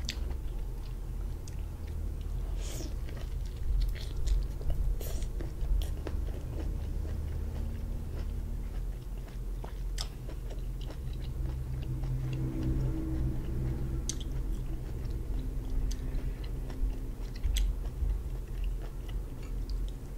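A person chewing boiled lobster meat close to the microphone, with scattered sharp mouth clicks and smacks over a steady low hum.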